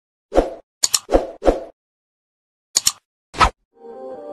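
Animated end-card sound effects: four short pops, and two crisp double mouse clicks, one about a second in and one near three seconds. Soft music starts just before the end.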